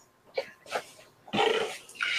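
A man's brief non-speech throat and mouth sounds in a pause between sentences: two small clicks, then a short throaty noise about a second and a half in, just before he speaks again.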